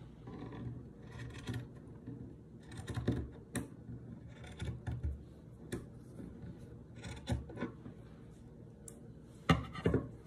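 Scissors snipping and scraping through cloth in irregular strokes, the loudest cut near the end. The scissors are cutting poorly, catching on the fabric.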